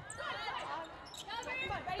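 Athletic shoes squeaking on a hardwood volleyball court in short high-pitched slides as players move during a rally, with a few sharp knocks of the ball being played.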